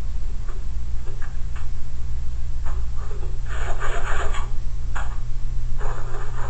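Scattered light clicks and rubbing from hands working at a tankless electric water heater's open housing, with a denser rustling patch about halfway through, over a steady low electrical hum.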